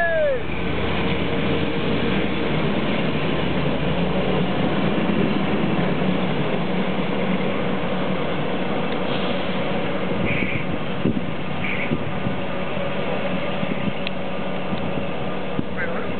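Passenger train hauled by an SU45 diesel locomotive pulling away: a steady rumble of wheels on rail with a low hum, and a few faint clicks and squeaks later as it draws off. Right at the start there is a brief falling-pitch tone.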